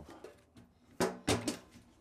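Quick, sharp metallic clacks, three close together about a second in and one more at the end, from a hydraulic hand pump being handled as its release valve is set and its lever lifted for pumping.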